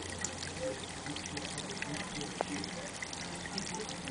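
Water trickling steadily into a garden pond, with a low steady hum underneath and a brief click about halfway.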